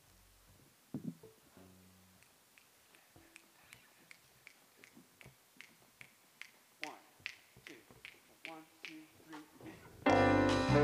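Fingers snapping at a steady tempo, about three snaps a second, counting in a jazz tune. The snaps come faintly at first and grow steadier from about three seconds in.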